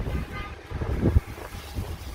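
Outdoor background noise: a low, uneven rumble like wind buffeting the microphone, with a short low thump just over a second in.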